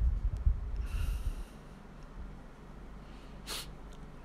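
A person breathing through the nose: a soft breath about a second in and a short, sharp sniff about three and a half seconds in, over a low rumble that fades out after the first second and a half.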